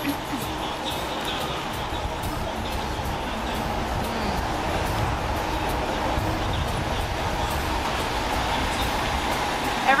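Street traffic on a busy city street: vans and cars passing close by, heard as a steady low rumble of engines and tyres.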